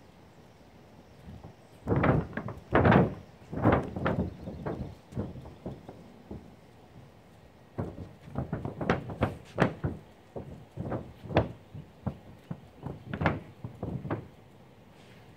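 Irregular thumps and knocks on a mobile home roof from flip-flop footsteps and a long-handled paint roller being worked along the roof's edge. There is a loud cluster about two to five seconds in, then a longer run of lighter knocks from about eight seconds on.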